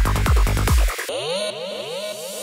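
Dark psytrance played in a DJ set: a driving kick drum and rolling bassline, which cut out about a second in. A repeating rising synth sweep, about four a second, carries on alone.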